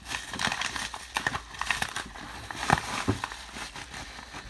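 Kraft bubble mailer being opened by hand: the paper and bubble lining crinkle and crackle in irregular bursts, with a couple of sharper clicks, the loudest about three quarters of the way through.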